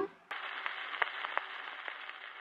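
Surface hiss and crackle of a 78 rpm shellac record as the stylus runs on in the groove after the music, with soft clicks about once per turn of the disc. The last note of the song cuts off at the very start, and the hiss begins a moment later.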